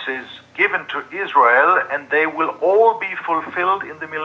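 Speech only: a man talking over a video-call line, his voice sounding thin.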